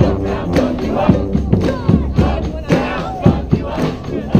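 Street brass band playing a funk tune over a steady drum beat of about two hits a second, with a group of voices shouting along.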